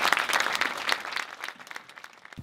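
Audience applauding, a dense patter of clapping that fades away near the end.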